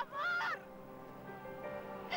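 A woman's high-pitched anguished wail for about half a second, then soft sustained background music.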